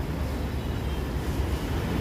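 Steady low rumble with a faint hiss of background noise, no speech.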